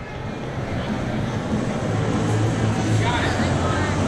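Steady low rumble of a large gymnasium's room noise, growing louder over the first couple of seconds, with people's voices talking in the background.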